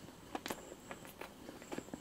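Close-miked chewing of a bite of chocolate-glazed doughnut: a run of soft, irregular wet mouth clicks.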